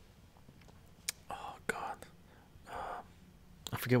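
A man whispering or muttering under his breath in two short hushed bursts while searching for a word, with a small click just before the first. He starts speaking aloud just before the end.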